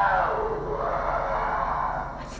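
A battery-operated toy's electronic sound playing, a muffled wavering tone that trails off toward the end.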